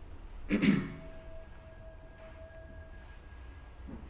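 A person clearing their throat once, briefly, about half a second in. After it the room is quiet apart from a faint steady tone.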